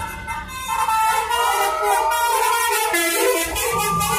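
Vehicle air horn from a passing bus on the highway, sounding over children shouting and cheering.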